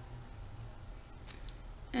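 Pencil on notebook paper: two short, scratchy clicks about a second and a half in as the pencil comes down on the page, over a steady low hum.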